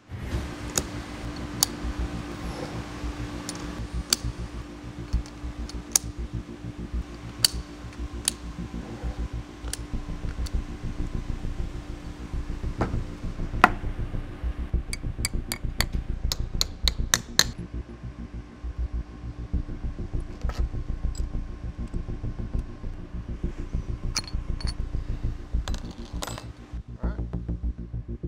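Sharp metallic clicks and ticks, some single and one quick run of them past the middle, as steel vise jaws and small hardware are handled and fitted onto compact machine vises. Underneath is a steady low background hum.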